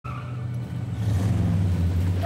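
Hummer H2 SUV engine rumbling as the truck rolls out of a garage, growing louder.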